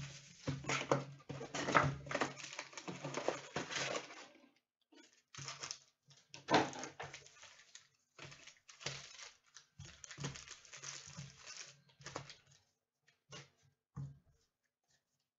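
Trading card packaging and cards being handled: irregular rustling, crinkling and light clicks, busiest in the first few seconds, then scattered short bursts with quiet gaps.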